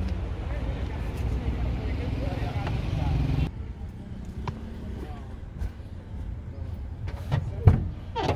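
Steady wind and traffic noise in an open car park, then a sudden drop to the quieter inside of a parked car. A few small knocks follow as people move about getting in, and there is a loud thump shortly before the end.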